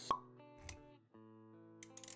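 Intro music with sound effects: a sharp pop just after the start, a short low thud a little later, then held musical notes with a few clicks near the end.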